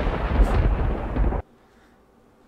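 Loud thunder-like rumble with crackle, a sound effect that cuts off abruptly about a second and a half in.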